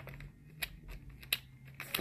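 Clear plastic lure packaging handled in the fingers, giving a few light clicks and crinkles, over a faint low hum.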